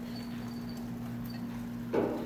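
Quiet lecture-hall room tone with a steady low electrical hum, a few faint ticks, and a short knock near the end.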